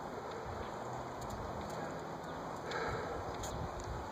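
Outdoor street ambience: a steady rushing noise with a fluctuating low rumble, a few faint clicks and a slightly louder swell about three seconds in.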